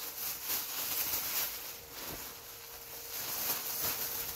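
Thin plastic shopping bag rustling and crinkling as it is handled, with soft irregular crackles.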